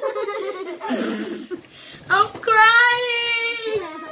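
Muffled, mumbled voices through a mouthful of marshmallows, then about two seconds in a child's voice holds one long, steady high note for about a second and a half.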